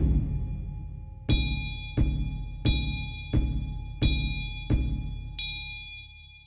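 Buddhist liturgical percussion: a deep ritual drum struck together with a ringing metal bell. The strokes come about 1.3 s apart at first, then quicken to about one every 0.7 s, each ringing down before the next.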